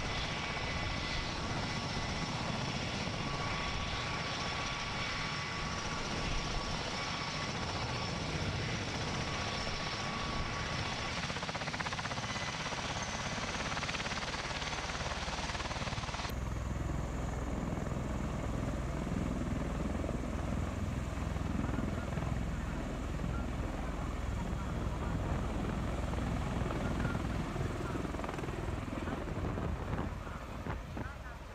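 V-22 Osprey tiltrotor running with its rotors turning in helicopter mode: steady rotor and turboshaft engine noise with a high turbine whine. About halfway through, the sound changes abruptly to a deeper rotor sound without the whine.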